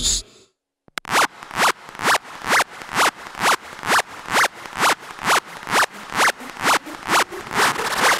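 Hardstyle music in a DJ mix: the previous track cuts off into a brief silence, then a new intro starts with scratchy, swept noise hits on every beat, a little over two a second.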